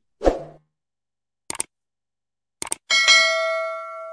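Subscribe-button animation sound effects: a pop as the button appears, a sharp click about a second and a half in, another click near three seconds, then a bright bell ding that rings on and fades.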